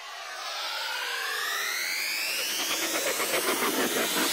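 Cinematic riser sound effect: several tones glide steadily upward in pitch, with a few sliding down, over a swelling rush that grows louder throughout.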